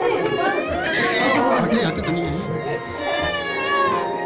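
Music playing with several people talking over it, and a high-pitched voice held out near the end.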